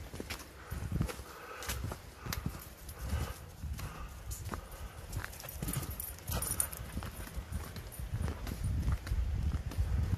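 Footsteps on a gravel and dirt path, irregular steps crunching, over a low rumble.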